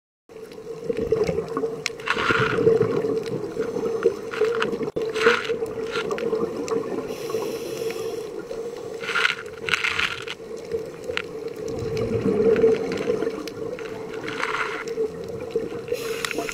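Underwater sound of scuba breathing through a regulator: a burst of exhaled bubbles every three to four seconds, over a steady low hum.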